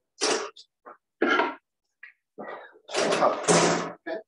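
Handling noise close to the microphone: several short bursts of rustling and brushing, the longest near the end.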